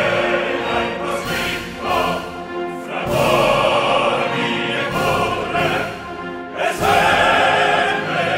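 Operatic chorus singing with full orchestra in a loud bel canto passage, with new loud chords entering about three seconds in and again near seven seconds.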